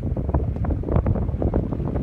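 Wind buffeting the microphone: a loud, uneven low rumble that gusts up and down throughout.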